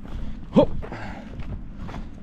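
Footsteps on a dry dirt and stone path, with a short voice sound about half a second in.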